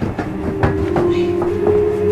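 A wooden dresser drawer full of clothes being yanked out and carried, knocking and clattering several times, over a steady held tone that steps up in pitch near the end.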